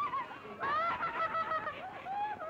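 Cartoon characters laughing in high, squeaky voices: a short laugh at the start, then a longer wavering laugh from about half a second in until shortly before the end.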